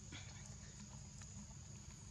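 Faint forest ambience: a steady high-pitched insect drone, with a few light scattered clicks.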